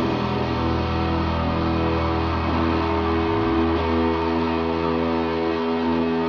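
Rock band's closing chord ringing out through the electric guitar and bass amplifiers after the last drum hits. The low bass note drops away about three and a half seconds in, while the higher guitar notes keep sounding.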